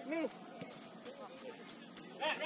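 Short shouted calls from players on a football pitch, with a few sharp knocks scattered in between.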